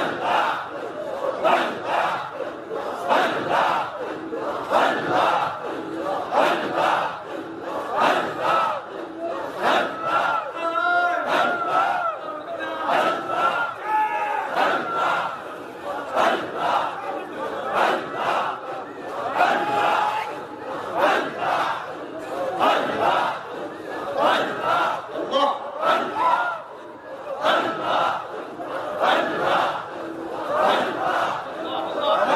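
A large group of men chanting dhikr together in a loud, rhythmic, repeated pulse, carried over a public-address system. Around ten seconds in, a single wavering voice rises above the chant for a few seconds.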